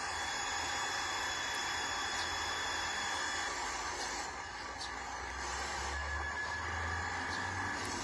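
Steady hiss of radio static from a software-defined radio receiver tuned near 431.6 MHz, playing through a laptop speaker while it listens for a car key fob's transmission.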